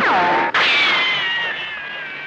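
Rifle shots with bullet ricochet whines off rock. A whine sweeps sharply down in pitch. About half a second in, a second shot cracks, and its ricochet whine falls slowly as it fades away.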